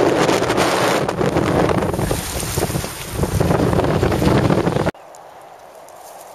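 Strong wind blowing on the microphone over choppy, wind-whipped water. It is a loud, steady rush that cuts off suddenly near the end to a much quieter background.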